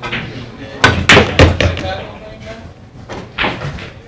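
A pool shot: the cue tip strikes the cue ball, then pool balls clack against each other and the cushions. About four sharp clacks come within a second, starting about a second in.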